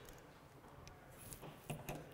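Faint handling sounds of a hand wire crimper on a red butt-splice crimp: a short rustle, then a few small clicks near the end as the tool is released from the crimped connector.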